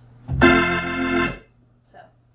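Hammond B3 organ with the full-organ registration (all drawbars out): one loud, bright chord held for about a second, then cut off.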